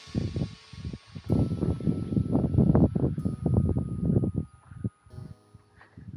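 Wind buffeting the microphone in uneven gusts that die down near the end, with faint background music underneath.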